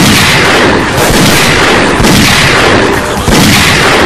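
Loud gunfire: heavy shots that roll together into a dense volley, with a fresh peak about once a second, four in all.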